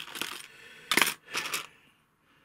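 Small plastic and resin model scenery pieces clicking and clattering against each other and the plastic compartment trays as a hand rummages through them. It comes as a few sharp clicks, the loudest about a second in.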